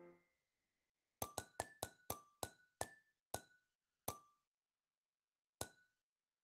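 Ticking sound effect of a Wordwall online spinner wheel slowing to a stop: about ten sharp clicks, each with a short pitched ping. They come about five a second at first and spread out until the last is more than a second after the one before.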